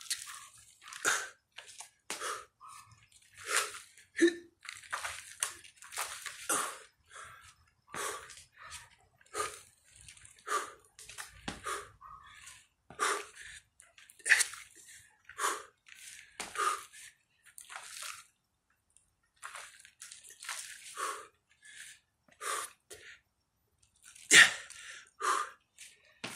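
A man's hard exertion breathing: short, forceful puffs of breath about once or twice a second, irregularly spaced, during a dumbbell lunge-and-curl workout.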